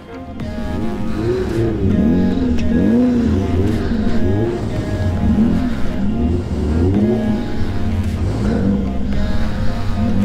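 Off-road vehicle engines revving over and over, each rev rising and falling in pitch about once a second over a steady low engine drone.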